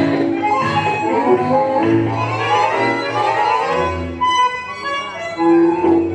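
Tango orchestra music, with bandoneon and violins carrying the melody over a bass line.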